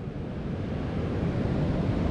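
Ocean surf washing steadily on the beach, with wind buffeting the microphone.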